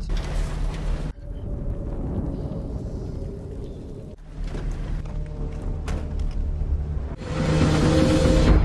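Cinematic trailer score: a low, sustained drone with deep booming hits. A loud burst of noise cuts off sharply about a second in, a new hit lands about four seconds in, and a louder noisy swell builds near the end.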